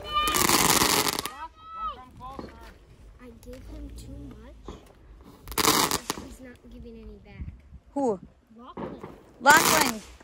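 A consumer ground firework going off in three loud rushing bursts of about a second each: one at the start, one around the middle and one near the end. Children's voices come in between.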